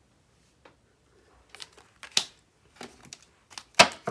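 Tarot cards being handled on a tabletop: a string of short, sharp card clicks and slaps starting about a second and a half in, the loudest just before the end.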